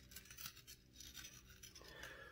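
Faint scraping and clicking of a worn ATV ball joint being wiggled by hand in its A-arm: the joint is shot and moves loosely in its socket.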